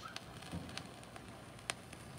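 Vinyl record surface noise from the stylus riding the silent groove after the music: faint crackle with scattered sharp pops over a low hum.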